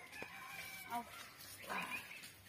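Chicken calling faintly: a long drawn-out crow, then a short call near the end.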